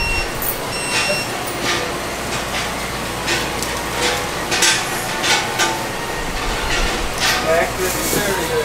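Store checkout sounds: two short electronic beeps, one at the start and one about a second in, then irregular rustling and clatter of items and bags being handled at the counter.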